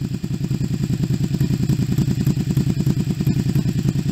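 Honda VTZ250's liquid-cooled 250 cc V-twin idling steadily, with an even low pulsing exhaust beat.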